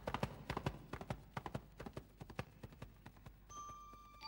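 Galloping hoofbeats of an antlered steed, a quick irregular clatter that thins out and fades about three seconds in. Near the end, a soft chiming music cue begins.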